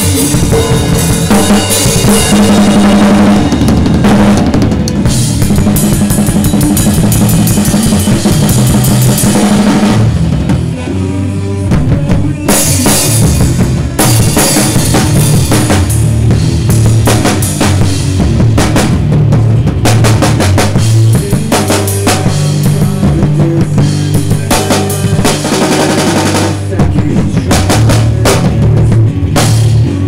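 Acoustic drum kit played hard with sticks: kick drum, snare and cymbals in a steady rock rhythm, with fast runs of hits, over loud band music with pitched low notes. The playing drops back briefly about ten seconds in.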